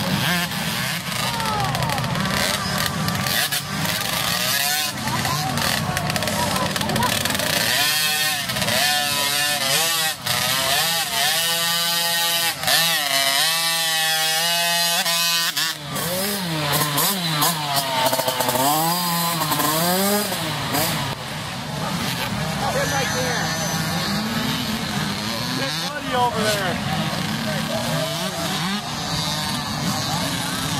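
Small youth dirt-bike engines revving up and down as the riders work the throttle, the pitch climbing and falling over and over, most strongly through the middle of the stretch. Voices are mixed in.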